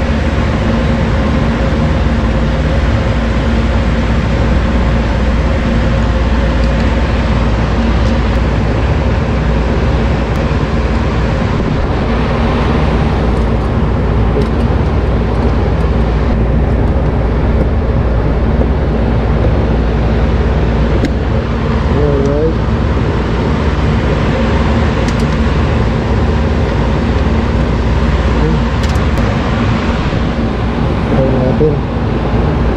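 Steady, loud drone of running machinery with a constant low hum, unbroken throughout.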